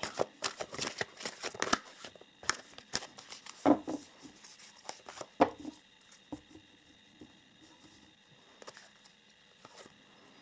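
A deck of oracle cards being shuffled by hand: a quick run of papery card clicks and slaps for about the first six seconds, thinning to a few soft taps as cards are drawn.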